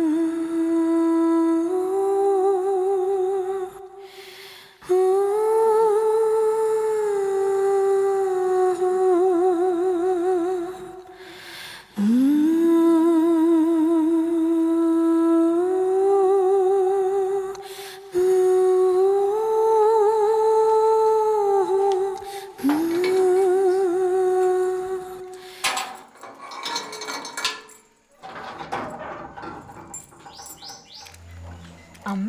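A single wordless voice humming a slow, mournful melody in long held notes with a wide vibrato, in phrases of a few seconds with short breaks between them. The humming ends about four seconds before the close, leaving faint scattered noises.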